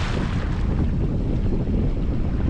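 Wind buffeting the microphone on open water, a steady low rumble.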